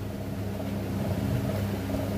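Steady low hum, with a few steady tones held underneath it and no change in pitch or level.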